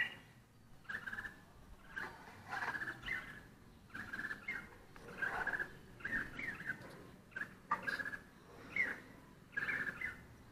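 Bulbul giving short calls over and over, irregularly spaced at one or two a second.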